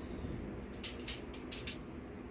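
Aluminium foil being handled: a brief soft hiss, then a quick run of about six sharp crinkles in the second half.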